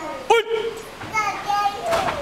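Voices shouting during a karate drill: a short rising-and-falling cry about a third of a second in, then a longer held, high-pitched cry in the second half.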